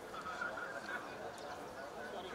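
Faint, distant shouting from footballers on an open pitch, the cries of players reacting to a goal just scored.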